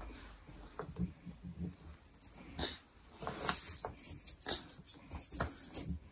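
Clothes rustling and swishing as they are rummaged through and pulled from a pile, the fabric handling growing busier about halfway through. A few faint short whimper-like vocal sounds come about a second in.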